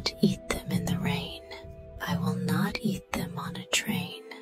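Whispered voice reading rhyming lines of a children's story over soft background music with steady held tones.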